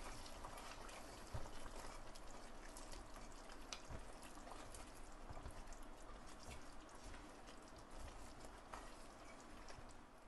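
Faint popping and bubbling of thick curry gravy simmering in a pot, with scattered soft clicks of a slotted spatula stirring it.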